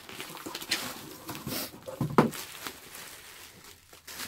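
Cardboard box and plastic packaging being handled and rustled as a boxed Funko Pop in a soft plastic protector is pulled out, with a short, sharp, loud sound about two seconds in.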